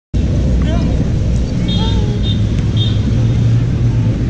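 Outdoor urban ambience with a steady low rumble on the microphone. A few short, high-pitched gliding voice sounds come over it in the first three seconds.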